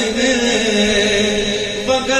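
A man's voice chanting Punjabi devotional verse (a rubai), holding one long drawn-out note that breaks off just before the end.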